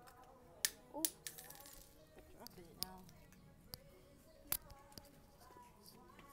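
Close-up handling noise: a string of sharp clicks and knocks, with a brief rustle about a second and a half in, as the phone and something held in the hand are moved about next to the microphone, over faint background music.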